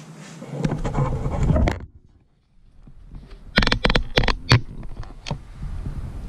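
Handling noise from the camera being moved and repositioned: a rumbling rustle about a second in, a short drop-out, then a quick run of sharp clicks in the middle as the mount is set.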